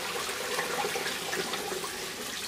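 Water from an aquaponics grow bed's running siphon pouring out of a perforated PVC down tube into a fish tank, splashing steadily onto the surface. The many holes spread the outflow to cut the noise and aerate the water.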